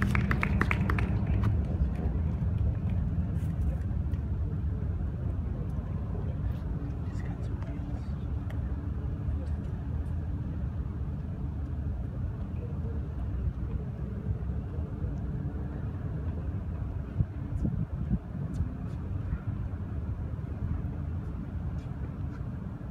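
Outdoor ambience: a steady low rumble throughout, with faint voices and a few faint, scattered clicks.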